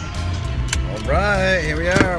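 A car idling heard from inside the cabin, a steady low rumble, with a sharp click a little after half a second in. In the second half a man's voice draws out a long, sliding, sung phrase.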